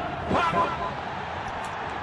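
Mostly speech: a brief exclamation from the radio football commentator about half a second in, over the broadcast's steady background noise.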